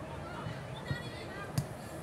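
Two dull thuds of a football being kicked, less than a second apart, over distant shouts of young players on the pitch.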